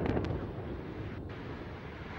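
Rumble of an Antares rocket's launch-pad explosion dying away just after the blast, with a couple of sharp crackles near the start.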